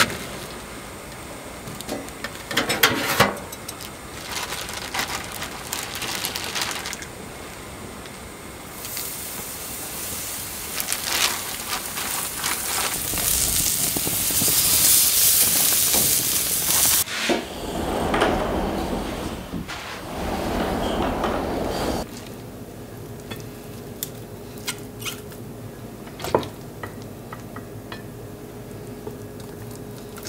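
A few clanks as the metal grill lid is handled, then sausages sizzling loudly on the grill grate for several seconds while tongs turn them, followed by a quieter stretch with a few light clinks near the end.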